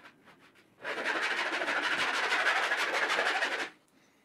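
A woodworking hand tool dressing the sawn edge of a plywood shelf board: one continuous scraping stroke of about three seconds, starting about a second in.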